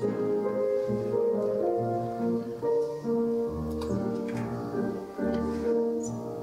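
Keyboard instrument playing a slow melody over held chords, the notes changing about every half second to a second, with a deeper bass note coming in now and then.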